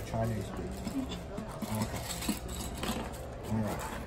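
Small plastic pump fittings and suction cups clicking and clattering as they are handled and set down on a plastic storage-tote lid, with low voices talking under it.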